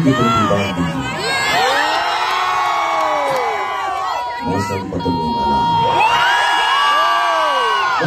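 Large audience cheering and screaming, many high voices overlapping in long rising and falling shrieks, one cry held steady for a couple of seconds in the middle.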